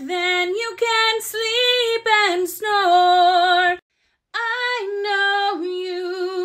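A woman singing long held notes in a sung melody. The sound cuts out completely for about half a second a little before the middle.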